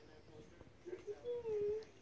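Small dog whimpering: two short whines about a second in, the second longer and slightly wavering in pitch.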